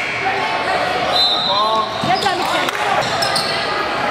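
Basketball game sound in a gym: people's voices from players and spectators, with a basketball bouncing on the hardwood floor.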